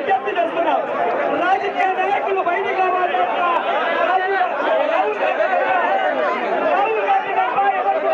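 A large crowd of people talking at once: a steady, dense hubbub of many overlapping voices, with no single speaker standing out.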